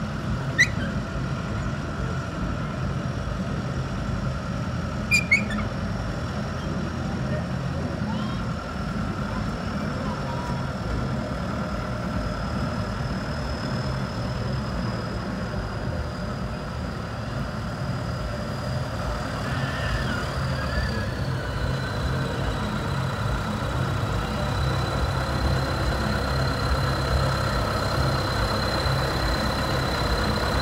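John Deere farm tractor's diesel engine running at low speed as it drives slowly closer, growing louder toward the end. Two sharp clicks sound early on, and a thin high steady whine runs underneath, dropping slightly in pitch about two-thirds of the way through.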